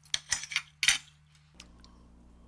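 Steel knife and carving fork clinking and scraping against a ceramic platter while cutting a block of processed meat: several short strokes in the first second, then it stops.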